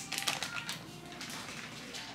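Crinkling plastic of a shredded-cheese bag being handled: a quick run of crackles in the first second, then fainter rustles.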